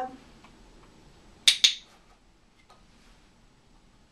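Handheld dog-training clicker pressed and released: two sharp clicks a fifth of a second apart, about a second and a half in. It is the marker for the puppy looking at the handler, to be followed by a treat.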